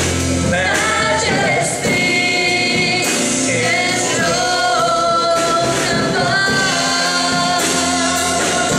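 A man singing a gospel worship song into a microphone, with musical accompaniment and long held notes.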